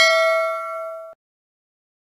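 A bright bell 'ding' sound effect, struck once and ringing with several clear tones as it fades, then cut off suddenly about a second in.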